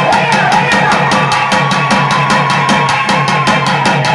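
Devotional folk music: fast, even drumming on a double-headed barrel drum, about eight strokes a second, under a sustained melodic line.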